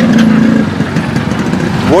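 Motorcycle engine running close by amid street traffic noise, with a steady low hum strongest in the first half-second.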